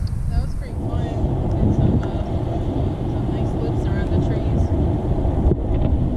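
Wind buffeting the camera's microphone outdoors: a steady, rumbling low noise with faint voices in the background.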